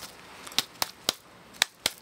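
Five short, sharp clicks from blue nitrile-gloved hands, irregularly spaced in the second half, as part of a touch and sensation test.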